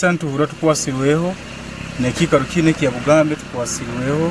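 A man speaking in short phrases, with a steady engine hum underneath from an idling vehicle, heard between his words.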